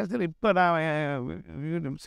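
Speech only: a man talking, with one long drawn-out syllable about half a second in.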